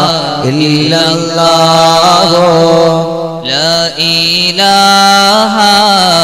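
Men's voices chanting mawlid verses in praise of the Prophet, sung in long ornamented lines with held, sliding notes; a new phrase starts about halfway through.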